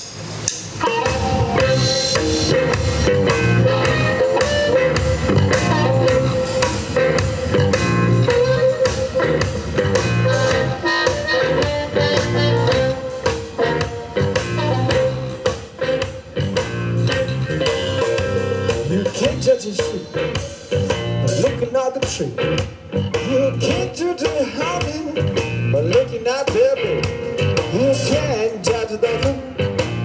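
Live blues band playing an instrumental passage on bass guitar, electric guitar and drum kit, with a harmonica holding a wavering line over the rhythm.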